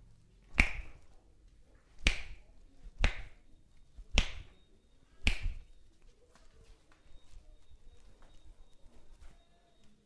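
Five sharp snaps, roughly one a second, as the client's finger joints are pulled and cracked during a hand massage; then they stop.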